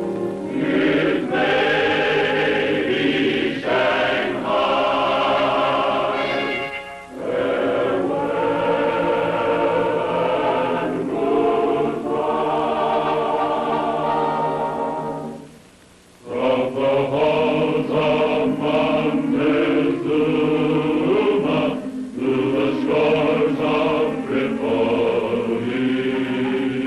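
Background music: a choir singing held chords, breaking off briefly a little past halfway through.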